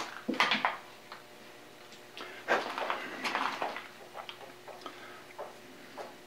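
Light handling sounds of small metal parts at a lathe: a few scattered clicks and knocks, busiest about half a second in and again around the middle, over a faint steady hum.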